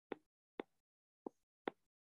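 Four faint, sharp taps of a stylus on a tablet's glass screen as handwriting is put down, spaced irregularly about half a second apart.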